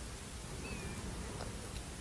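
Faint steady background hiss, with a brief faint high squeak-like tone under a second in and a couple of soft ticks later on.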